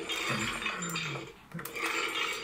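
A man laughing: a low chuckle that falls in pitch about half a second in, and more laughter near the end.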